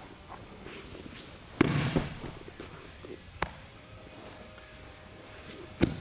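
Bodies and feet hitting a padded training mat during a double leg takedown: a loud thud about a second and a half in, a sharp slap near the middle, and another thud near the end.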